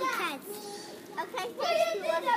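Young children's voices talking and babbling, fading out just after the start and picking up again in the second half.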